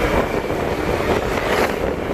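Small motorbike on the move along a road: steady engine and road noise that runs unbroken and does not let up.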